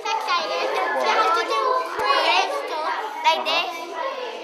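Several children talking and calling out over one another, their voices overlapping too much to make out words. A single sharp click comes about halfway through.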